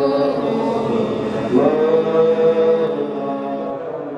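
A voice chanting in long, held notes over a steady low drone that drops out shortly before the end.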